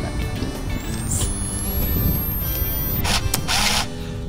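Background music with a thin, very high whine over it. The whine rises in pitch over about two seconds and then levels off, like a disposable camera's flash charging. Near the end come two short hissy whooshes.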